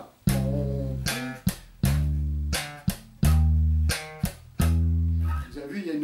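Electric bass played slap-style, slowly: four sustained slapped-and-popped octave notes (C, D, D sharp, then E), with short muted ghost-note clicks between them.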